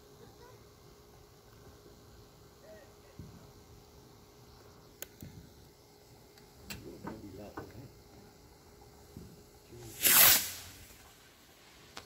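A firework going off with one short, loud hissing whoosh about ten seconds in, after a quiet stretch with faint voices and a couple of small clicks.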